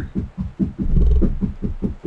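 A rapid low rattle of short pulses, about ten a second, loudest around the middle, from something nearby outside the room.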